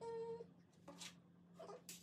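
A brief squeak, then faint clicks and taps of glass microscope slides being handled on a bench and set onto the microscope stage.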